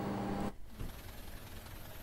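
Faint, even background noise with no distinct event. There is a brief dropout about half a second in, where one audio feed gives way to another.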